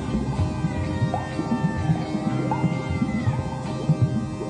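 Live rock band playing an instrumental jam with electric guitar, bass, drums and organ. Sustained lead notes bend and glide in pitch over a steady drum beat.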